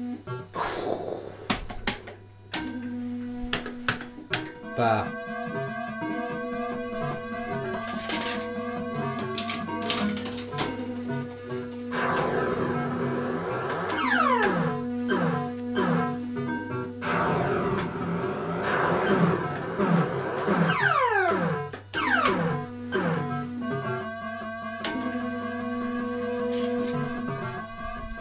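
Electrocoin Big 7 fruit machine playing its electronic bleeps and tunes while the reels spin and stop, with a few sharp clicks. Midway there are runs of quick falling tones.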